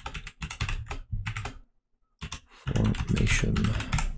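Typing on a computer keyboard: a quick run of key clicks, a short pause about halfway, then more typing.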